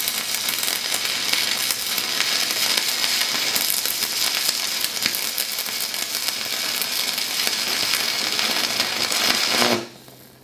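Stick-welding arc from a Vevor MIG 130 three-in-one welder running at about 90 amps: a steady crackling sizzle as the electrode burns along a long bead, cutting off suddenly near the end as the arc is broken. No cooling fan is heard running.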